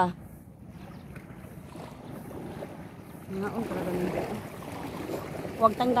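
Steady wind noise on the microphone with the sea in the background, and a woman's voice speaking softly about three seconds in and again near the end.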